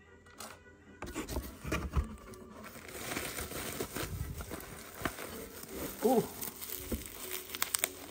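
Cardboard box flaps opening and plastic bubble-wrap packaging crinkling and rustling as hands dig into it, with a quick cluster of clanky clicks near the end: jewelry knocking together inside the wrapping, probably not a good sign.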